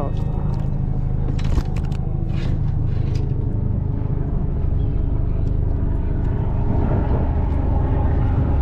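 Steady low rumble, with a few light knocks and clicks between about one and a half and three seconds in.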